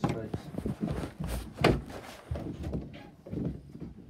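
A person laughing, with a sharp bump about one and a half seconds in, the loudest sound here.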